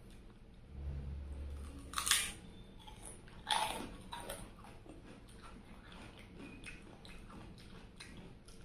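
Close-miked mouth sounds of someone biting and chewing a crisp fried papad snack: two loud crunches about two and three and a half seconds in, a smaller one soon after, then softer chewing with small wet clicks.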